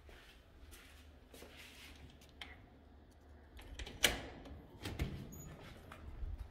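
A door being unlatched and opened, with a sharp latch click about four seconds in and a few lighter clicks, over the rustle and rumble of a phone being carried.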